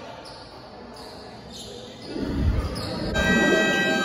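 Scoreboard buzzer in a basketball gym, sounding about three seconds in as one steady, held tone over the hall's background voices, just after a few low thumps.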